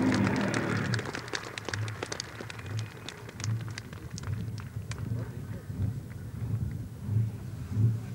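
A drag truck's engine dies away about a second in. After that there is an uneven low rumble with many short crackles.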